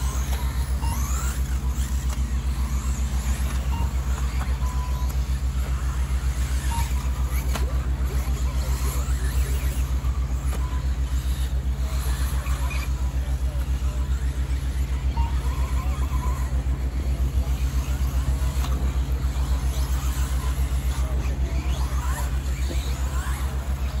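Radio-controlled 4WD racing buggies running around a dirt track, their motors giving short rising and falling whines as they accelerate and brake, over a steady low rumble.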